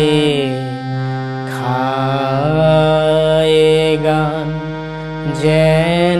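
Harmonium playing a slow song melody in D-sharp major with steady reedy held notes, while a man sings along in long notes that slide between pitches.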